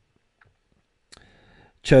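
Near silence, then a single faint click about a second in, followed by a man's voice starting to speak near the end.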